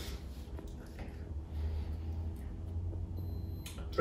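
Automatic blood pressure monitor running a reading: its pump gives a low steady hum as it inflates the arm cuff, a little stronger from about one and a half seconds in, with a short faint high tone and a click near the end.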